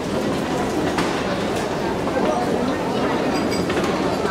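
Original Orenstein & Koppel escalator running under a rider, a steady mechanical running noise from the moving steps with a few faint clicks.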